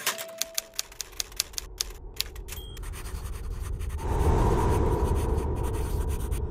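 A sound effect of rapid sharp clicks, about five a second, like a typewriter or a running film projector. A low rumbling drone then swells up about four seconds in.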